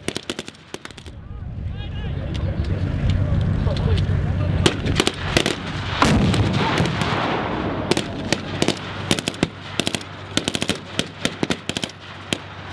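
Blank-firing rifles and a machine gun shooting single shots and rapid strings, with a tracked armoured vehicle's engine and tracks running underneath through the middle, loudest about six seconds in. The shooting becomes dense in the last few seconds.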